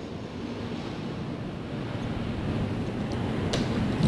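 Steady rushing background noise with no speech, slowly growing louder toward the end.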